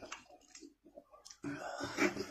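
Close-up eating sounds: wet mouth clicks and smacks as cooked meat is chewed and pulled apart by hand, then a breathy hiss in the second half.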